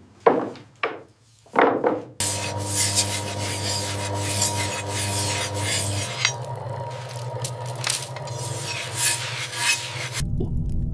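A few short scraping strokes of knives shaving wooden arrow shafts. Then, from about two seconds in, the steady rasp of a steel blade held against a turning grindstone, with a low hum beneath it.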